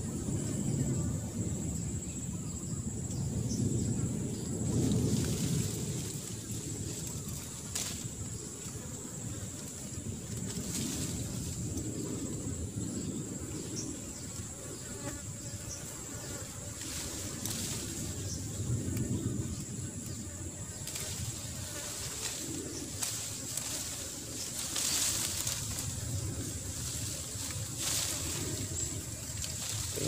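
Outdoor ambience: a steady high-pitched insect buzz over low, uneven rustling and handling noise, with a few sharp clicks.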